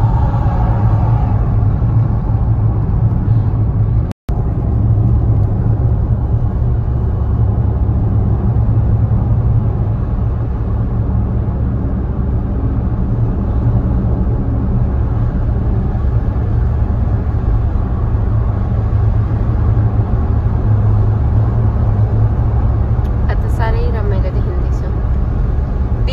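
Steady low rumble of road and engine noise inside a moving car's cabin. The sound cuts out completely for a moment about four seconds in.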